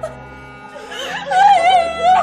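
A low, steady music bed, and about a second in a woman's voice rising into a loud, high, wavering cry that lasts about a second.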